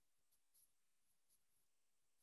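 Near silence, with a few very faint, short high-pitched ticks.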